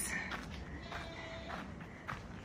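Footsteps on a dirt trail under quiet outdoor ambience, with a faint held tone about a second in that lasts about half a second.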